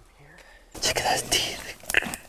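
A quiet moment, then a man saying "check" in a low, near-whispered voice, with a brief sharp crackle near the end.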